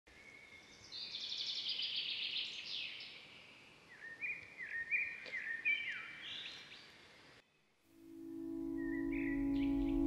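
Songbirds singing and chirping, with a rapid trill in the first few seconds and a run of short falling chirps after it; the birdsong cuts off suddenly a little past seven seconds. From about eight seconds a steady, sustained music chord fades in, with a lone bird call over it.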